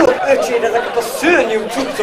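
Speech only: several voices talking over one another on a stage.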